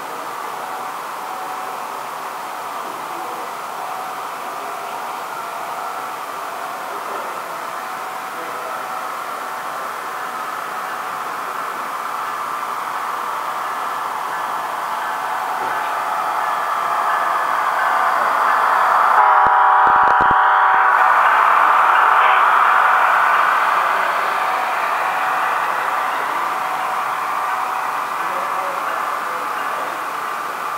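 Model diesel train running past at close range: a steady running noise that grows louder as the locomotives approach and pass, with a short horn blast about two-thirds of the way in, then the passing hopper cars keeping the running sound up before it eases off near the end.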